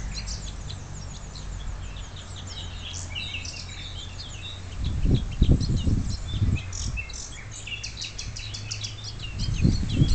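Songbirds chirping and singing in a dense run of short high notes. Low rumbling on the microphone, likely wind or handling, cuts in loudly between about five and six and a half seconds in and again near the end.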